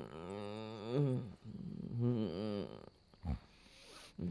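A sleeping person snoring loudly: a long, wavering snore, then a second one about two seconds later. A short, low thump follows soon after.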